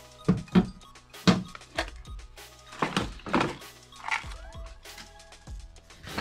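Unboxing noises: plastic packaging rustling and cardboard being handled in a box, with several dull knocks, the loudest within the first second and a half. Faint background music runs underneath.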